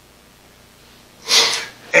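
After a quiet pause, a man takes one short, sharp breath in about a second and a half in, just before he speaks again.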